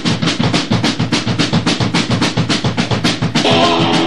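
Punk rock band demo recording: a drum kit opening a song with fast, even hits on snare and bass drum, about seven a second. The rest of the band comes in about three and a half seconds in.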